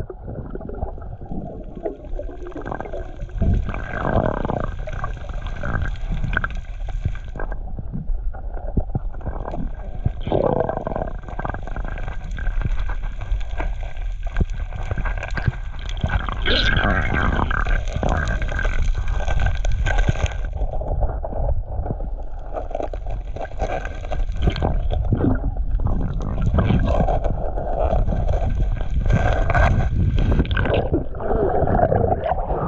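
Muffled underwater sound picked up by a camera in the sea: a steady rumbling wash of water with gurgling, and many small knocks throughout.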